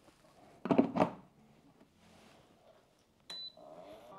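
A clear plastic storage-box lid being lowered and set onto the box, with a short plastic clatter about a second in. Near the end there is a sharp click with a brief high beep.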